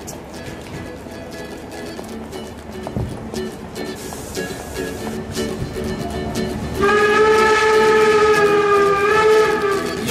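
Song intro on acoustic guitars, with plucked and strummed strings. About seven seconds in, a louder chord of long held notes comes in and lasts until the singing starts.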